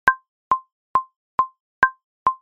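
Metronome count-in clicking at 137 beats a minute, five short pitched clicks a little over two a second, the first beat of each bar marked by a higher click.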